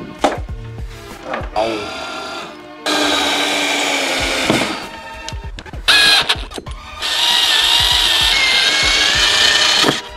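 Cordless drill driving a screw through a metal speaker wall-mount plate into the wall, running in two spells: a short one about three seconds in and a longer one over the last three seconds, its motor pitch wavering under load.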